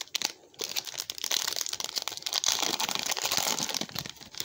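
Plastic trading-card pack wrapper crinkling as it is handled and opened: a few sharp crackles, then from about a second in a dense, continuous crinkling until just before the end.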